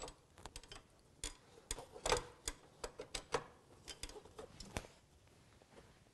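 Irregular light clicks and taps of the net shelf's rods being fitted into the camping table's aluminium frame. They are thickest about two seconds in and die away about five seconds in.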